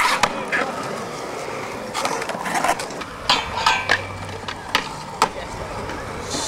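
Skateboards on a concrete skatepark: a sharp clack as a board meets a metal handrail, then wheels rolling with several more sharp clacks of boards popping and landing.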